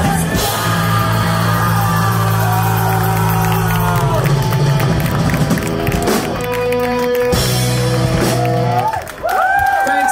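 Live rock band with vocals, electric guitar, bass and drums playing the end of a song, breaking off about nine seconds in. The crowd then whoops and cheers.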